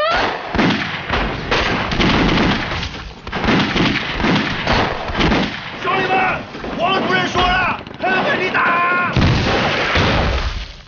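Battle gunfire: rapid, overlapping rifle and pistol shots, with men shouting over it in the second half and a heavy explosion near the end.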